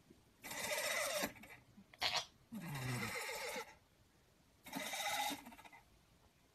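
A cat snoring in its sleep: a rasping breath about every two seconds. The third breath is deeper and has a falling tone.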